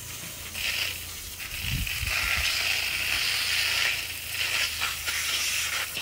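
Water running from a garden hose and splashing over a butchered wild boar carcass on plastic sheeting: a steady hiss, with a brief low thump about two seconds in.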